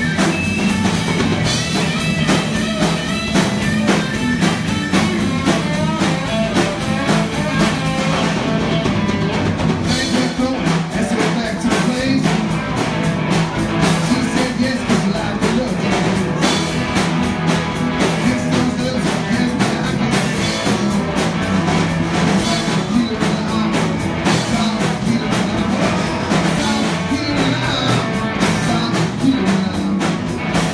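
A live rock band playing loud: electric guitar over a steadily beating drum kit, with some singing.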